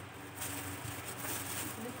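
Electric stand fan humming steadily at a low level.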